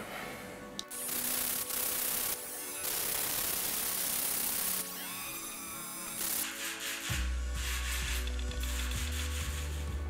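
Dremel Stylo rotary tool with a sanding drum grinding a wet piece of Baltic amber, heard as stretches of hiss, while it works away the stubborn outer layering. Background music plays under it, with a low bass coming in about seven seconds in.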